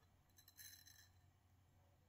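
Faint, brief crisp scraping, about half a second in and lasting about half a second, as the Kizer Sheepdog XL's 154CM stainless blade shaves hair off a forearm. It is the sound of an edge that is very sharp out of the box.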